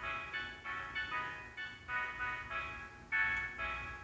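Playback of a hip-hop beat made on an Akai MPC: a repeating melodic loop of pitched notes, each starting sharply and fading, about two notes a second.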